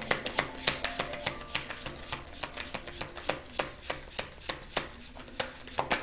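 A deck of tarot cards being shuffled by hand: a quick, irregular run of clicks and slaps as the cards strike one another.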